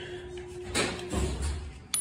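Hand rustling and handling of small parts, ending in a sharp metallic clink as a steel part is set down on concrete.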